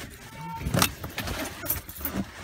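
A bunch of car keys jangling with handling noise inside a car, two short rattling clatters about a second apart.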